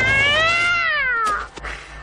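A cat-like yowl: one long call that rises, then falls in pitch and dies away about a second and a half in.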